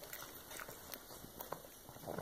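A pug chewing a crunchy treat: faint, irregular crunching clicks.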